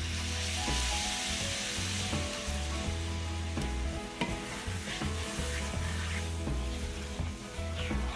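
Chicken stock hitting a hot cast-iron skillet of browned sausage and flour roux, sizzling hard at first and easing after a few seconds, with a spoon stirring through the pan.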